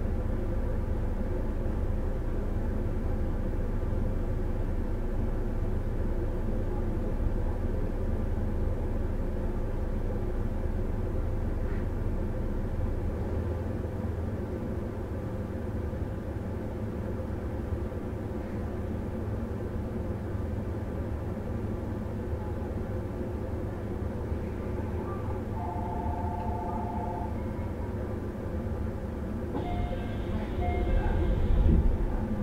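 Running sound recorded aboard a 313 series electric train moving along the line: a steady rumble of wheels and running gear, easing slightly about halfway through. A brief two-note tone sounds near the end.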